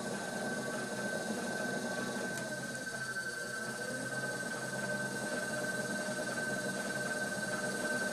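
Pottery wheel running steadily while a wire loop trimming tool scrapes firm, overnight-dried clay from the foot of an upturned plate. A steady high-pitched whine runs throughout.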